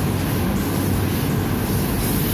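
Commercial laundry machinery running with a loud, steady low rumble that does not change.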